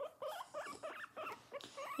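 Guinea pig squeaking in a quick series of short squeaks that rise and fall in pitch while being held, as it tries to bite.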